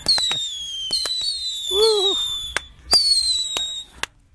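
Fireworks: three whistling shells, each a falling whistle of about a second, with sharp cracks between them.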